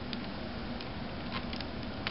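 A few faint, light clicks and taps from hands handling a netbook's plastic display bezel and screen assembly, over a steady background hiss.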